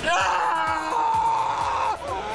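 A man's long, high-pitched mock cry of pain, 'aaah', held for nearly two seconds and breaking once about a second in. It is a faked cry during a magic trick in which a pen seems to go through his tongue.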